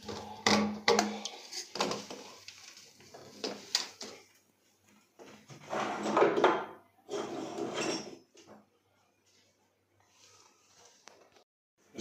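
Plastic sink waste pipe and fittings being handled: a few sharp clicks and knocks in the first four seconds, then two longer scratchy noises about six and seven seconds in, as tape is pulled off a roll to wrap the loose pipe joint.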